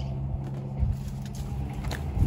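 A steady low hum with a rumble beneath it, with a few faint light ticks.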